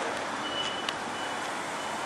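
An electronic vehicle warning beeper sounds three short, high, steady beeps about two thirds of a second apart over street noise, with one sharp click near the middle.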